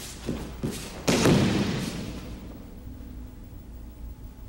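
A person thrown with a kotegaeshi wrist throw lands on the tatami mat with a heavy thud about a second in, after two quicker footfalls.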